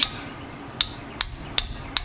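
A hammer striking the handle of a 3/8-inch ratchet to shock loose a stuck 14 mm rear brake caliper bolt. Five sharp strikes: one at the start, then four in quick succession, a little over two a second.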